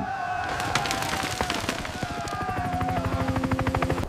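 Cinematic soundtrack sound design: a rapid chopping pulse, about ten a second, under held tones, with lower tones joining in the second half.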